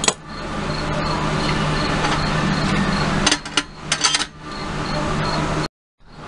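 Small sharp metallic clicks and taps from soldering work on a strobe light's metal case, a cluster of them about three to four seconds in, over a steady background hiss and hum. The sound cuts out briefly just before the end.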